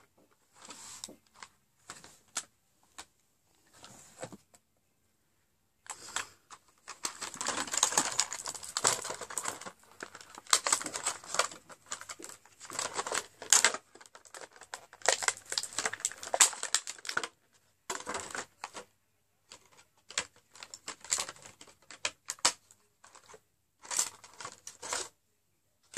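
Plastic lipstick tubes and caps clicking and rattling as they are handled in a plastic basket, with some rustling: a dense stretch of handling through the middle and scattered single clicks towards the end.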